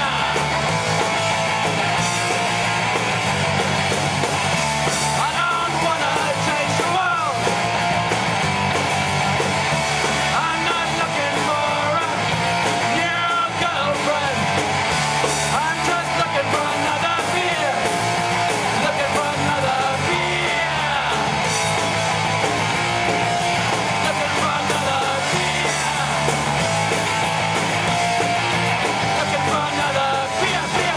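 A live punk rock band playing loudly: distorted electric guitars and drums driving along steadily, with singing over them.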